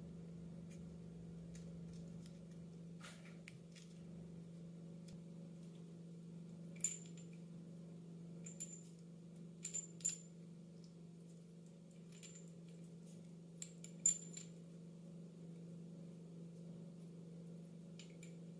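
Scattered small metallic clicks and ticks, several with a brief high ring, as a threaded bidet fitting is handled and wrapped with Teflon tape, over a steady faint low hum.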